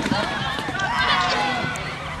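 Several children's voices shouting and calling out over one another during an outdoor running game.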